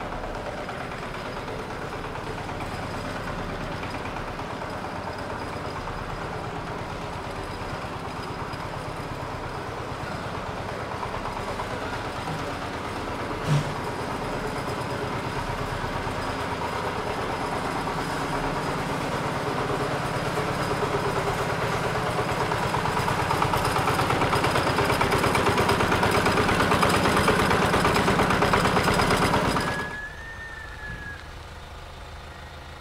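A vehicle engine idling steadily, growing louder over the second half, with one sharp click about halfway through. It cuts off suddenly just before the end.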